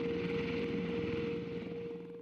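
V-22 Osprey tiltrotor's engines and rotors running, a steady drone with one held tone, fading away near the end.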